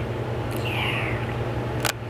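Room tone: a steady low hum, with one sharp click near the end.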